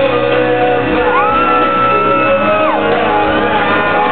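Live rock band playing through an arena PA, with a loud, high-pitched whoop from an audience member held for about a second and a half.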